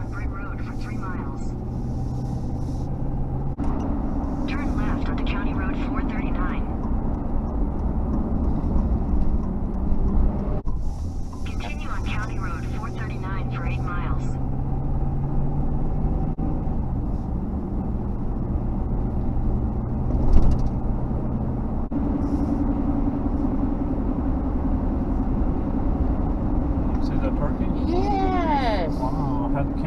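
Steady road and engine noise inside a moving car's cabin, a low rumble with a constant hum. There is a brief thump about twenty seconds in.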